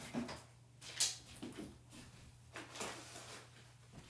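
Faint scattered knocks, clatter and rustling of things being handled and moved about, over a low steady hum.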